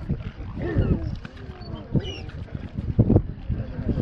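A mute swan being caught and lifted by hand: a few heavy wing-beat thumps, the strongest about three seconds in, and brief calls from the swan.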